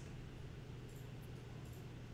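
Faint steady room tone: a low hum under a soft hiss, with no distinct events.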